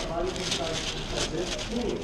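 Faint murmured voices with soft rustling of a plastic window-tint film sheet being held up in front of a heat lamp.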